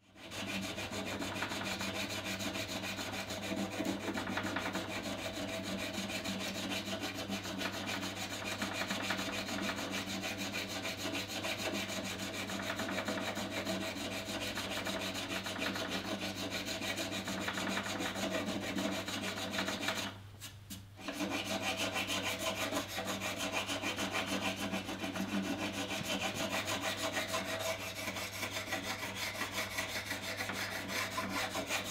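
A small hand tool rubbing back and forth along the wooden edge of a guitar neck as glue is worked into the edge binding: a continuous fine scraping over a steady low hum. It breaks off briefly about twenty seconds in, then carries on.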